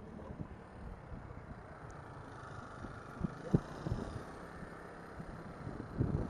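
Faint low rumble of wind on the microphone and road noise while riding a Volta VS2 electric scooter, with a few light knocks about three and a half seconds in.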